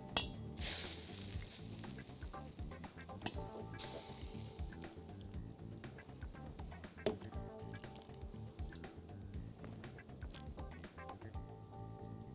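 Minestrone soup being ladled into a china bowl: two pours of liquid, one just under a second in and one about four seconds in, and a single knock about seven seconds in.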